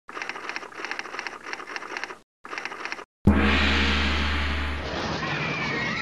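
Channel intro music and sound effects. A fast stuttering beat cuts out twice, then a sudden loud hit about three seconds in leaves a low held drone that slowly fades.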